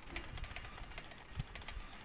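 Wire whisk beating thick flour batter in a glass bowl: a quiet, steady swishing with a few faint clicks.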